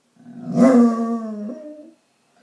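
Basset hound giving one long howl, loudest soon after it starts and tailing off near the end. It is separation howling while its owner is out.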